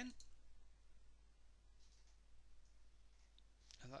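Near silence: faint room tone, with one faint click about three and a half seconds in.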